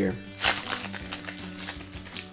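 Foil wrapper of a Yu-Gi-Oh Duelist Pack booster being torn open by hand, with short crinkles and tears over steady background music.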